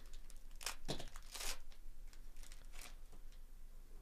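Trading-card pack wrapper being torn open and crinkled by hand: a series of short, irregular rips and crackles.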